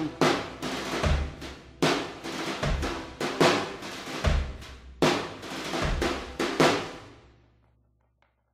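Slow drum beat alone ending the song: snare and bass drum strikes a little more than once a second, with a deep bass-drum hit on every other beat, fading out near the end.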